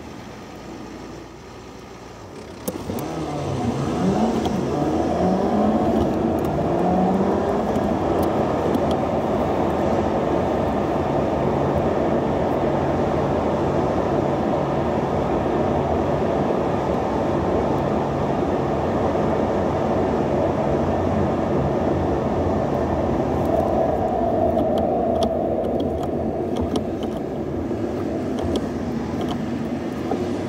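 A car stands idling quietly, then after about three seconds pulls away and accelerates, its engine pitch rising twice as it goes up through the gears. After that comes a steady mix of engine and tyre noise at cruising speed, heard from inside the car.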